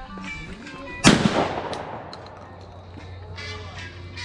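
A single shotgun shot about a second in, its report ringing out and fading over about a second.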